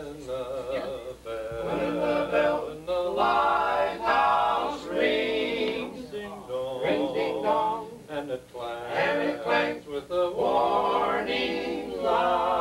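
Male barbershop quartet singing a cappella in four-part close harmony. The voices hold chords with vibrato, phrase by phrase.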